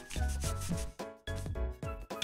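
Fingertips rubbing a paper sticker seal flat onto a kraft paper envelope, a dry papery rub strongest in the first second or so. Background music with a steady beat plays underneath.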